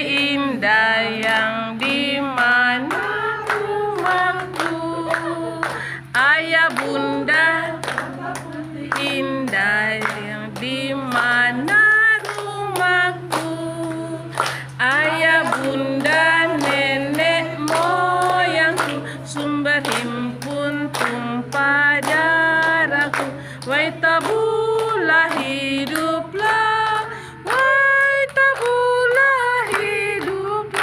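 A group of women singing together unaccompanied, with regular hand claps keeping the beat.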